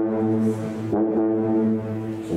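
Two sousaphones playing long, low sustained notes, with a new note starting about a second in.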